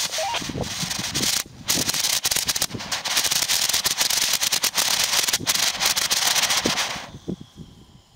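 Small experimental solid rocket motor with potassium perchlorate–silicone (GE Silicone II binder) propellant burning in a static test: a rushing hiss thick with irregular crackles and pops. It cuts out for a moment about a second and a half in, then picks up again and burns for about seven seconds before dying away. The stutter is the chuffing expected from this silicone-bound formulation.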